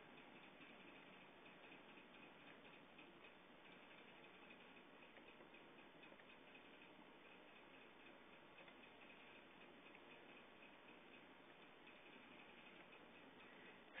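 Near silence: faint hiss with scattered soft clicks of a computer mouse.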